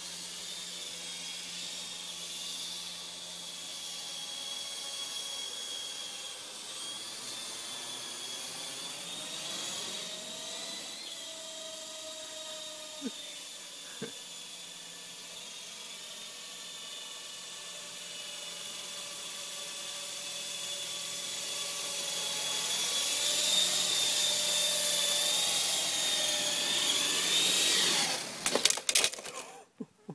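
Electric RC helicopter flying: a high, steady motor-and-rotor whine whose pitch wavers as the throttle changes, getting louder over the last several seconds. Two short clicks are heard about halfway through.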